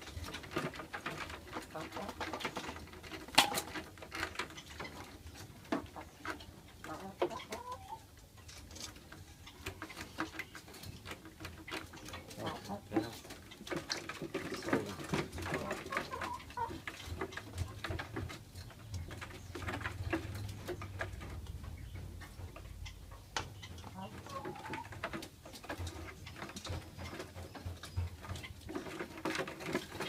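Irregular sharp taps and clicks of a newly caught oriental magpie-robin hopping and fluttering against the walls of a clear plastic-jar cage, the restless jumping of a bird not yet used to the cage; one louder knock a few seconds in, with short bird calls mixed in.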